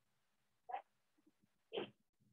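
A dog barking twice, two short barks about a second apart, with a few faint small sounds between them.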